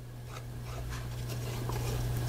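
Faint rustling and small ticks as glue is squeezed from a bottle onto a small piece of chipboard, growing slowly louder, over a steady low hum.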